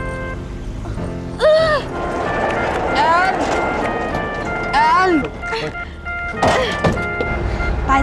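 A woman's short, anguished cries over dramatic background music with steady held tones, as a small car drives away.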